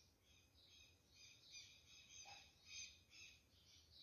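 Near silence, with faint birds chirping now and then.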